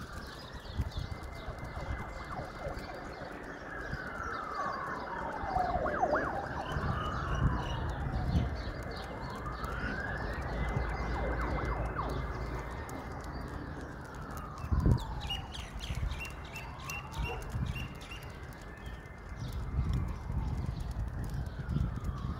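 Emergency-vehicle siren wailing, sweeping slowly up and down in pitch every few seconds, with overlapping sweeps where two wail cycles cross.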